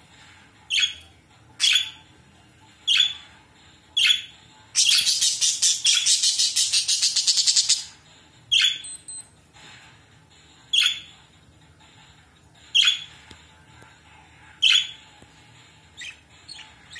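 Pet budgerigars (parakeets) calling in their cage: sharp single chirps every second or two, with a rapid chattering run lasting about three seconds in the middle.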